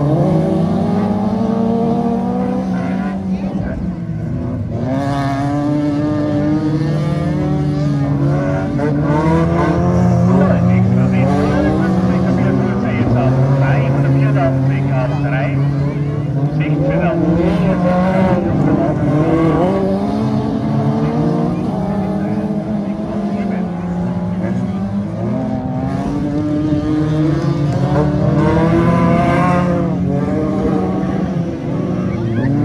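Several stock car engines of up to 1800 cc racing on a dirt track: overlapping engine notes rise and fall as the cars accelerate and lift off through the turns.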